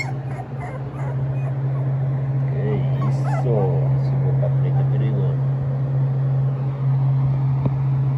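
Pit bull puppies about 16 days old whimpering and yipping in a cluster of short calls through the middle, over a steady low hum.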